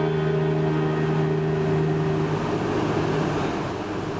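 String quartet of two violins, viola and cello holding a long sustained chord, which stops about two seconds in. A steady noise without any tones follows to the end.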